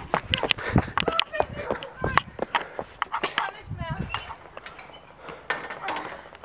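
Running footsteps with knocks and rubbing from a jostled hand-held camera, as irregular thuds throughout, and a brief vocal sound a little before four seconds in.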